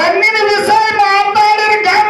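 A man singing in a high voice into a microphone, holding long, steady notes in a folk-song style.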